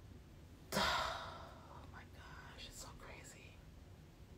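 A woman's breathy exhale or sigh close to the microphone, starting suddenly about three-quarters of a second in and fading over about half a second, followed by faint whispered mouth sounds.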